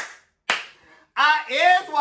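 Two sharp hand claps about half a second apart, followed by a man laughing.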